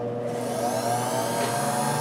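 Mini drill press motor running with no load, its whine rising in pitch from about half a second in as it speeds up, then holding steady.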